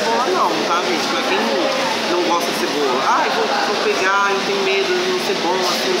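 Indistinct voices talking over a steady background noise.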